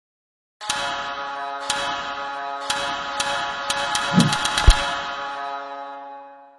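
Short musical logo sting: a sustained chord with sharp ticking clicks about once a second, the ticks coming faster near the middle, then a low swell and a single deep hit, after which the chord fades away.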